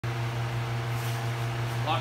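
A steady low hum, with a man's voice starting right at the end.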